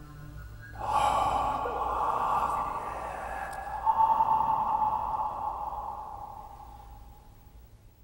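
End of the video's background soundtrack: a breathy, rushing sound comes in about a second in, swells again around four seconds, then fades away.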